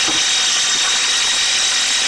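Electric drill running steadily at speed, spinning a Squirrel Mixer paddle through a gallon can of paint, with a faint high whine.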